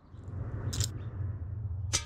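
Small plastic two-colour counters rattling, then clattering onto a glass tabletop: a short rattle about three quarters of a second in and a sharp clatter near the end, over a steady low rumble.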